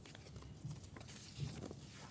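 Faint rustling of paper sheets being handled close to a desk microphone, with a few soft scattered clicks and light knocks.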